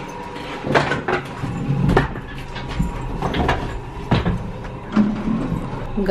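Scattered clicks and knocks, about seven over a few seconds, as people and a wheeled suitcase get into a hotel passenger lift, over a steady low hum.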